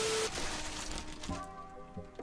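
TV-static glitch sound effect: a burst of hiss with a steady beep that cuts off a moment in. The hiss fades, and faint background music with held notes comes in during the second half.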